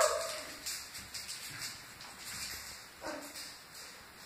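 Great Dane whining in a high pitch, fading out in the first half second, followed by one short faint whimper about three seconds in.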